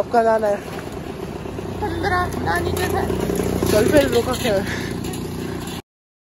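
Steady low rumble of wind and street noise picked up while riding a bicycle, with brief voices over it; the sound cuts off abruptly near the end.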